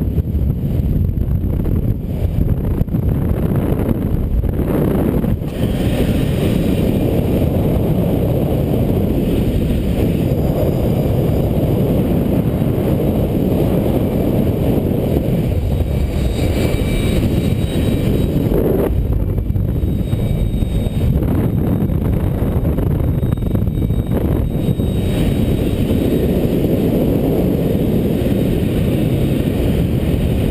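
Wind rushing over a helmet camera's microphone during parachute canopy flight: a loud, steady low rumble.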